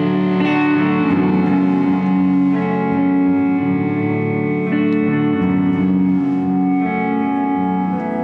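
Live rock band playing: electric guitar and bass guitar holding ringing chords through effects and reverb, the chords shifting every second or so.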